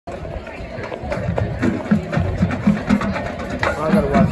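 Outdoor stadium crowd: spectators talking near the microphone, with music playing in the background.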